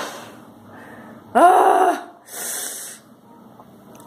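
A woman gasping and groaning from the burn of a just-swallowed shot of Everclear grain alcohol: a short laugh at the start, a brief voiced groan about a second and a half in, then a sharp hissing breath.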